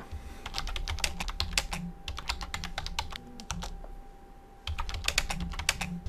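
Typing on a computer keyboard: quick runs of keystrokes, with a pause of about a second a little past halfway before the typing resumes.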